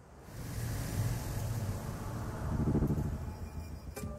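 A low rumble that swells to a peak about three seconds in, then eases off.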